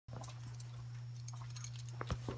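Faint clicking and rattling from a phone being handled and carried, over a steady low hum.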